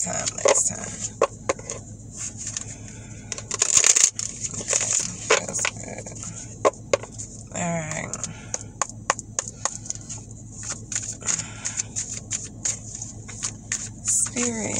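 A deck of tarot cards being shuffled by hand: quick, irregular flicks and snaps of the cards, with a denser run of them about four seconds in. A short vocal murmur from the shuffler comes near eight seconds.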